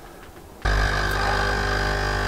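Capsule coffee machine's pump switching on just over half a second in and running steadily while it brews, a low hum with a high steady tone over it.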